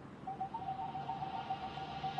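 Quiet TV soundtrack music: a single held electronic note that comes in a moment in and stays steady.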